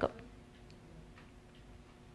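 Faint ticks, a few of them about half a second apart, over a low steady hum; a voice cuts off right at the start.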